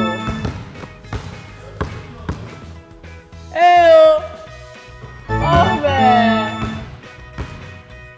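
Basketballs bouncing on a hardwood gym floor, short knocks in an echoing hall, over background music. About three and a half seconds in and again a couple of seconds later come two loud drawn-out vocal exclamations that slide down in pitch.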